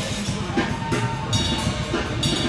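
Live band music: a drum kit played busily under an electric guitar.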